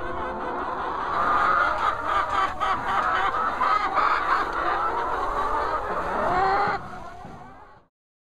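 A flock of hens clucking and calling over one another, many overlapping voices at once. The sound drops away sharply near the end and fades out.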